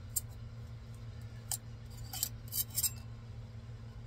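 Putty knife prying brittle resin 3D prints off the printer's build plate: a few short sharp scrapes and clicks, bunched together a little before the three-second mark, over a steady low hum.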